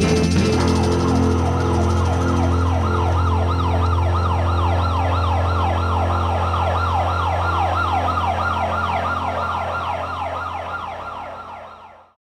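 Closing passage of a lo-fi electronic instrumental: a held low drone under a siren-like falling sweep that repeats about three times a second, fading out to nothing near the end.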